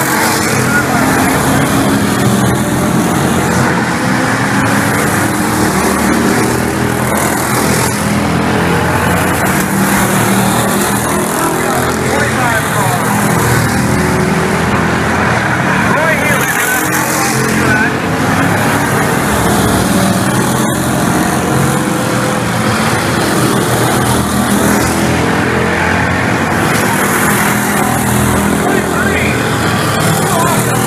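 Bomber-class stock cars racing around an oval track, their engines running hard, with the engine notes rising and falling as the pack laps. Voices are mixed in.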